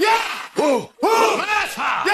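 Shouted vocal chant of "yeah" repeated over and over, each call swooping up and then down in pitch, about two or three a second.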